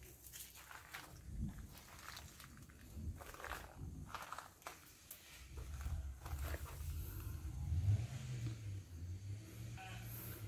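Faint scattered rustles and crackles, with a low rumble that sets in about halfway through.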